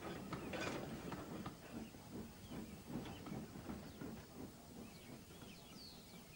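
Model locomotive crashing through a model wooden barn: a burst of cracking and clattering about half a second in, then scattered small clicks and crackles as the broken pieces settle.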